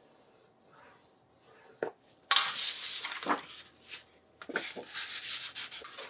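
Sheets of old paper being handled by gloved hands, rustling and sliding against each other and over a grooved scoring board. A light click comes about two seconds in, then a louder rustling sweep that fades and returns as shorter scrapes.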